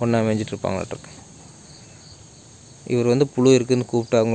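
A man's voice speaking short phrases at the start and again for the last second, over a steady high chirring of crickets or similar insects.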